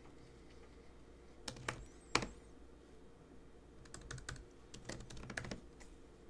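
Typing on a computer keyboard: a few separate keystrokes about a second and a half in, then a quicker run of several keys from about four seconds in.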